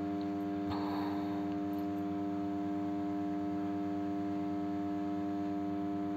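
A steady, unchanging hum with several overtones, with a brief faint rustle about a second in.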